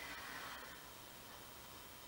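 Very quiet room tone: a faint, steady hiss with no distinct sounds.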